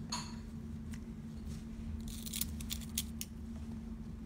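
Faint rustling and scratching of linen fabric being handled while a needle and thread are drawn through it in hand stitching, with a cluster of short scratchy sounds about two to three seconds in, over a steady low hum.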